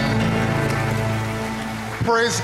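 A church congregation applauding as the music ends, over a held low note that slowly fades.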